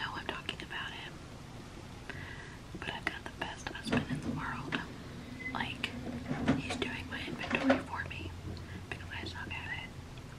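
A woman whispering close to the microphone: breathy whispered speech with small mouth clicks.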